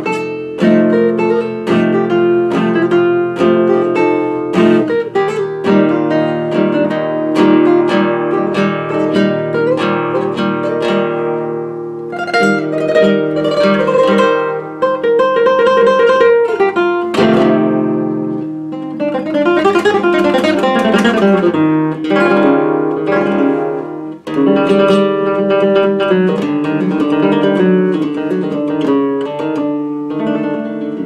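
Solo flamenco guitar playing a rondeña in its open scordatura tuning (sixth string down a tone, third down a semitone, capo at the first fret). It plays runs of plucked notes with strummed chords between them.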